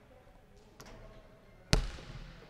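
A basketball bouncing on a hardwood gym floor: a faint knock about a second in, then one loud bounce near the end that rings out in the hall.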